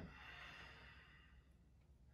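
A faint exhale close to a headset microphone, fading out over about a second and a half, then near silence.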